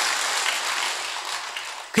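A large audience applauding, the clapping fading away steadily and dying out near the end.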